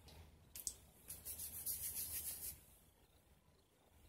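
Glass perfume spray bottle being spritzed: a short hiss about half a second in, then a longer, fluttering hiss lasting over a second.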